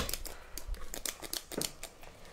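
Cookie scoop clicking and scraping against a stainless steel mixing bowl as it works sticky cookie dough loose: a run of light, uneven clicks and scrapes.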